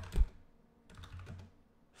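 Typing on a computer keyboard: a louder keystroke just after the start, then a short run of lighter keystrokes around the middle.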